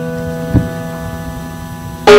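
Electric stage piano holding a chord that slowly fades, with a soft low thump about half a second in.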